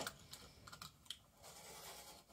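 Craft knife scoring a thin MDF strip along a metal ruler: faint, irregular small clicks and scratches, with one sharper click right at the start.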